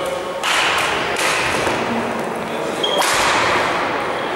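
Badminton rackets striking a shuttlecock in a short rally: three sharp cracks, about half a second in, just over a second in and about three seconds in, echoing in a large sports hall.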